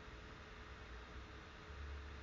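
Faint room tone: a steady low hiss with a low hum underneath, and no distinct sound events.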